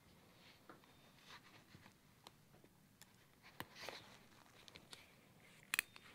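Near silence in a small room, with a few faint clicks of steel surgical instruments, a needle holder and forceps, being worked while a buried suture is placed. The sharpest clicks come a little before the middle and near the end.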